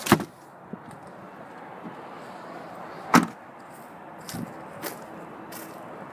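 A few knocks over a steady background hiss: a thump at the very start, a sharper knock about three seconds in, and two fainter taps a little after.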